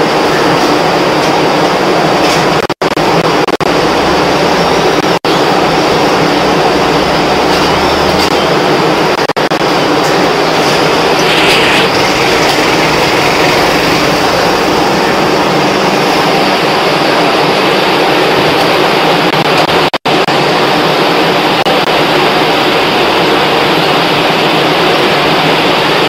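Dry-waste segregation machine with an inclined cleated conveyor belt running: a loud, steady mechanical noise that drops out for an instant three times.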